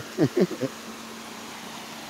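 Steady rushing of a fast-moving river current, after a few short sounds of a man's voice in the first half-second or so.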